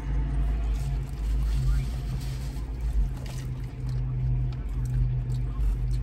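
Steady low hum of a parked car's engine idling, heard inside the cabin, with a few faint clicks and rustles.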